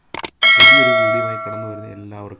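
Two quick clicks, then a bright bell ding that rings on and fades over about a second and a half: the sound effect of a subscribe button and notification bell being clicked.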